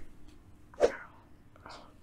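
A man's single short, sharp vocal outburst about a second in, a pained grunt at being hit, followed by a faint breath.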